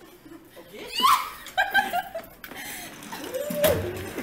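A group of young people laughing and calling out, with a loud rising cry about a second in.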